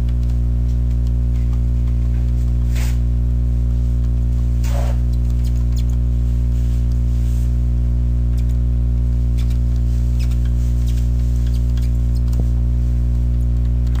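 A steady low hum runs throughout. Over it come a few faint squeaks of a graphics-tablet pen on the tablet surface, about three and five seconds in, and a light tick near the end.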